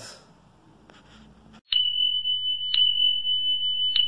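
A steady high-pitched electronic tone starts with a click a little under halfway in and holds, with a click about once a second: a sound effect for a YouTube subscribe-bell end screen.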